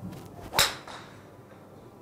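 Golf swing with a Titleist TSi2 13.5° fairway wood: a brief swish of the downswing, then one sharp crack as the clubhead strikes the ball off a practice mat about half a second in, ringing briefly after.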